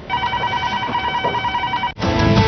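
Telephone ringing with an electronic trill, a rapidly warbling tone that cuts off abruptly near the end.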